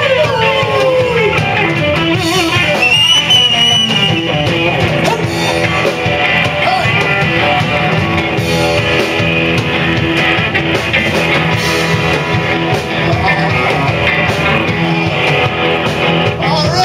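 Live rock band playing: electric guitars, bass guitar and a drum kit, loud and continuous.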